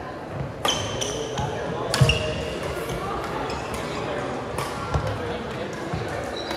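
Badminton rally in a large gym: sharp racket hits on the shuttlecock and sneakers squeaking on the court floor, four sharp sounds in all, the loudest about two seconds in, echoing in the hall over a murmur of voices.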